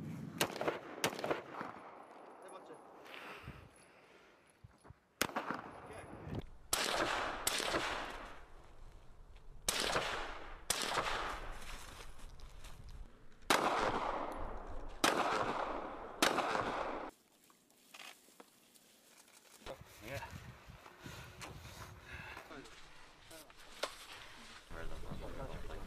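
Gunshots fired one at a time at irregular intervals, about ten in all, each sharp crack trailing off in a long echo; the firing stops about two-thirds of the way through.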